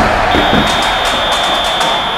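Logo-sting intro music for a TV sports segment: loud, dense music with a steady high tone held from about half a second in.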